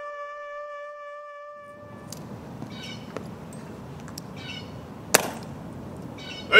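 A trumpet holds one long note that fades out in the first couple of seconds. It gives way to open-air background sound with faint distant voices and a single sharp click near the end.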